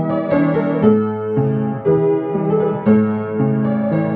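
Piano being played: a slow tune of chords, a new chord struck about every half second, each ringing on into the next.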